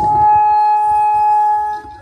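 One long, steady musical note with a reedy, wind-instrument-like tone, held flat in pitch for nearly two seconds and then cut off.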